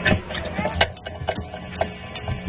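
A string of sharp stick clicks at a steady pace, a drummer's count-in just before a rock band starts playing, with crowd voices and a steady low amplifier hum underneath.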